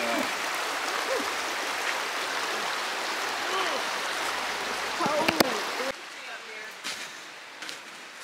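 Shallow, rocky mountain stream rushing steadily, with faint voices over it. The water sound cuts off abruptly about six seconds in, leaving a quieter background with a few soft clicks.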